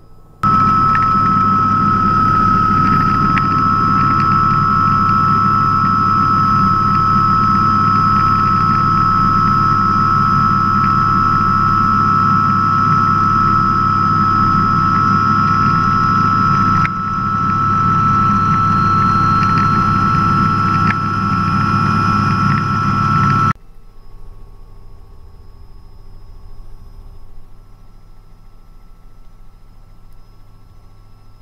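Robinson R66 helicopter heard from inside the cabin: the Rolls-Royce RR300 turbine's steady high whine over the low drone of the rotor, as the helicopter lifts off and climbs. It cuts off abruptly near the end, leaving a much fainter steady cabin drone.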